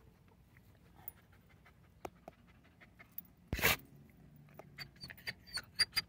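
A dog panting and shifting about, with scattered light clicks, one loud short noise about three and a half seconds in, and a quick run of sharp clicks near the end.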